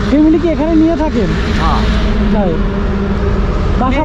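A person talking in short phrases over a steady low rumble of road traffic, with a constant engine hum underneath.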